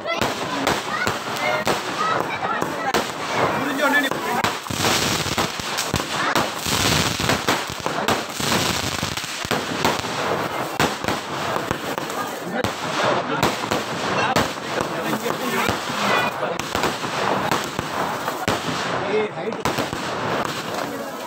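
Fireworks going off in quick succession: aerial shells bursting overhead in golden sprays, with dense crackling and many sharp bangs throughout.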